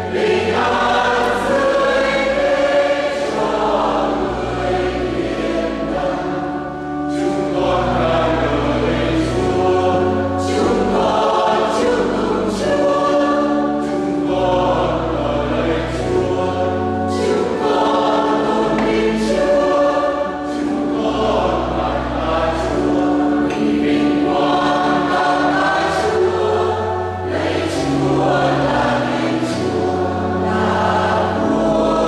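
Mixed church choir singing a Vietnamese hymn in harmony, over low sustained accompaniment notes that change every couple of seconds.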